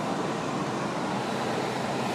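Steady, even cabin noise inside a 2010 Hyundai Genesis Coupe 3.8 GT whose 3.8-litre V6 is idling, heard from inside the car.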